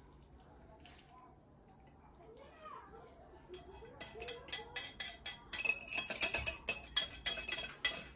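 Wire whisk clicking and scraping against the side of a bowl of cream mixture as it is worked out over a baking dish. The sharp, quick clicks start about halfway through and come several a second, growing louder toward the end.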